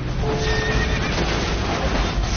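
A horse whinnying over background music.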